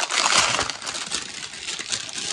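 Clear plastic packaging bag crinkling and crackling as it is handled and opened, loudest in the first half second and then tapering off.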